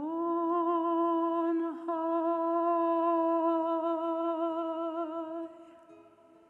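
A solo voice holds one long note with vibrato in a stage musical, broken only briefly about two seconds in, then fades out near the end, leaving a soft held chord beneath.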